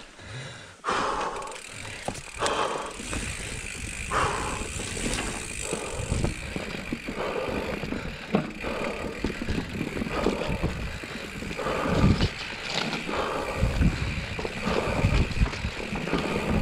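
Mountain bike rolling over dirt forest singletrack: a steady run of tyre noise with the clatter and rattle of the bike over roots and bumps, and heavier thuds near the end.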